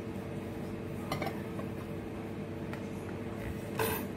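Light metal clinks of a steel blender jar against a steel strainer and bowl as blended watermelon is strained: a faint clink about a second in and a sharper one near the end, over a steady low hum.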